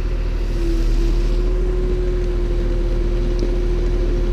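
Diesel engines of wheeled excavators running steadily under load, with a steady hydraulic whine that comes in about half a second in and holds.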